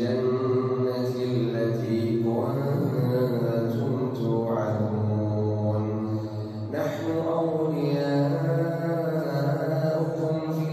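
A male imam reciting the Quran aloud in a melodic, drawn-out style while leading congregational prayer. He holds long notes, shifts pitch about halfway through, and starts a new phrase about seven seconds in.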